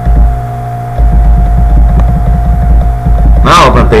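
Loud, steady low electrical hum with a thin steady higher tone above it, dipping briefly just after the start. A voice starts speaking near the end.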